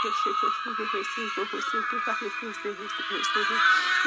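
A voice praying in tongues: a fast, unbroken run of short repeated syllables, about six or seven a second, that near the end slides into longer drawn-out tones.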